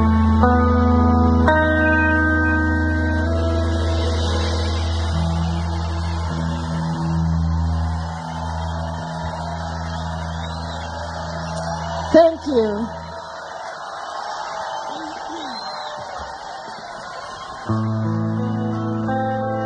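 A live rock band's final chord ringing out and fading over a festival crowd cheering, with whistles and a shout. The chord dies away about two-thirds of the way in, leaving the crowd's cheering alone.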